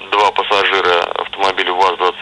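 A man speaking over a telephone line: continuous speech with a thin, narrow phone-line sound.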